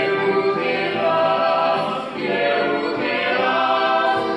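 A small mixed group of men's and women's voices singing a Christian song in harmony, holding long notes, with a brief break between phrases about two seconds in.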